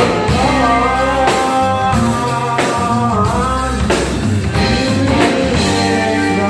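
Live band playing a rock/funk groove: drum kit, electric bass and saxophone, with a bending melodic line carried over the rhythm. Strong accents come about every second and a bit.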